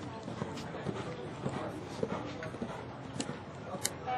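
Hoofbeats of a show-jumping horse cantering on sand arena footing, with people's voices in the background.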